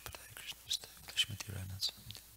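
Quiet, partly whispered speech, with several short hissing 's' sounds and a brief low voiced stretch near the end.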